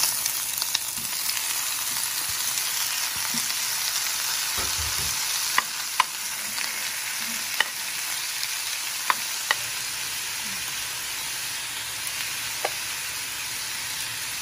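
Pineapple and tomato chunks sizzling in hot oil with garlic in a nonstick frying pan. The sizzle swells as the food goes in, then settles to a steady frying hiss. A metal spoon stirring the food clicks sharply against the pan about six times.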